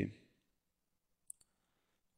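A single computer mouse click a little over a second in, against near silence.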